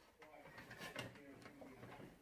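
Near silence: faint room sound with a few light knocks and rustles of plastic plant pots being handled.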